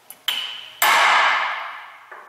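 Two hammer blows on the steel yoke of a driveshaft U-joint: a light tap about a quarter second in, then a much harder strike just before a second in whose metallic ring dies away slowly.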